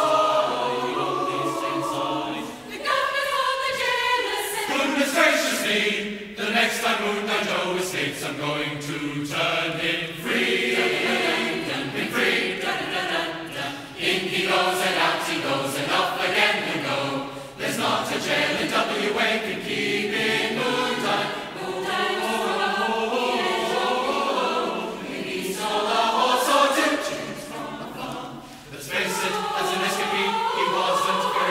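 Large mixed choir of men's and women's voices singing together, in sustained phrases with brief pauses for breath between them.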